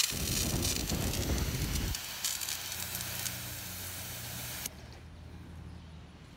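Hand-held fire extinguisher discharging a mist onto a gas fire: a sudden start, then a steady loud hiss that cuts off sharply a little over four and a half seconds in. A low rumble runs under the hiss for the first two seconds.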